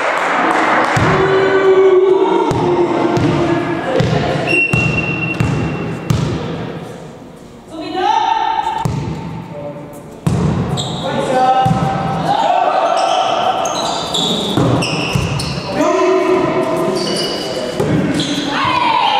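Indoor volleyball rally in a reverberant sports hall: repeated sharp slaps of the ball being served, passed and hit, with players shouting calls to each other between the hits.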